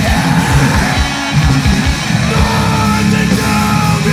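Power-violence hardcore punk from a vinyl record: fast, pounding drums under dense distorted guitar, with yelled vocals. The drumming breaks off briefly about a second in, then drives on.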